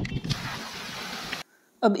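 A small brush scrubbing a Honda CG 125 Deluxe aluminium crankcase half: a steady, hissing scrub after a few clicks, cut off suddenly about one and a half seconds in.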